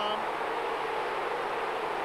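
A large football stadium crowd making a steady hubbub of many voices.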